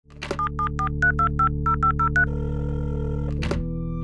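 A telephone line clicks open, then ten touch-tone keypad beeps follow in quick succession, dialing the number 774-325-0503, over a steady low drone. After that a steady tone holds until a sharp click at about three and a half seconds.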